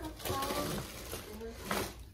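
Handling noise from the phone's microphone rubbing against hair and clothing, with a brief faint voice early on and a short rustle near the end.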